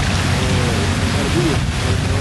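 Steady rushing background noise with a low hum under it and faint distant voices.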